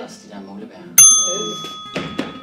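A bell struck once about a second in: a single bright ding that rings on and slowly fades.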